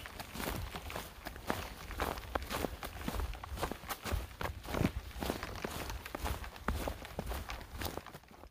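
Hiker's footsteps on a forest trail: a quick, irregular run of short scuffs and clicks from boots on the ground, over a steady low rumble on the microphone.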